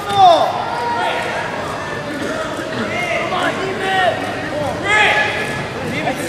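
Several people shouting and calling out at once in a reverberant gymnasium, with louder shouts near the start and about five seconds in.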